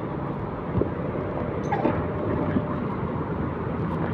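Steady engine and road noise of a moving motor scooter, with no distinct pitch or revving.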